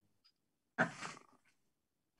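Near silence, then a single short vocal "oh" about a second in.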